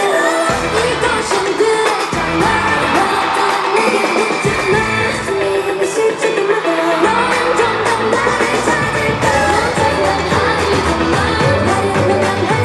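K-pop girl group performing live: upbeat pop music with women's voices singing over the backing track through the arena sound system. The bass drops away for a few seconds midway and comes back strongly about seven seconds in.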